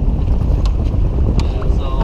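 Wind buffeting the microphone: a loud, steady low rumble. Two faint clicks come about two-thirds of a second and a second and a half in.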